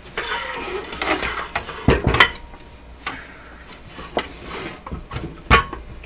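Metal chassis of a vintage RF signal generator being handled and tipped on a workbench: scraping and rustling at first, then a few sharp metal knocks and clunks, loudest about two seconds in and again near the end.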